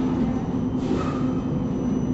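MBTA Silver Line bus heard from inside the cabin: a steady motor hum with a constant low tone, and a short hissing burst about a second in.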